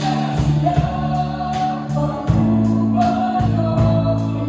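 A live worship band playing a song sung in Russian: a woman's lead voice over keyboards, electric guitar and a drum kit, with regular cymbal strokes keeping a steady beat.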